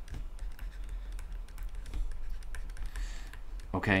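Stylus tapping and scratching on a tablet screen during handwriting: an irregular string of light clicks over a low steady hum.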